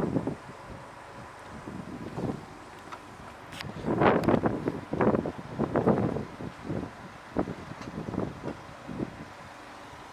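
Wind buffeting the microphone in irregular gusts, strongest from about four to six seconds in, with a few faint knocks of handling noise.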